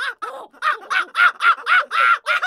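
A rapid run of high-pitched, monkey-like laughing calls, about five a second, each call rising and falling in pitch.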